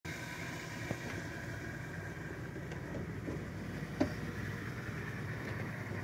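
Safari vehicle engine idling with a steady low rumble. A short sharp click about four seconds in.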